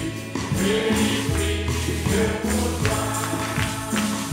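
A congregation singing a gospel hymn together, with a steady beat of hand clapping and jingling percussion.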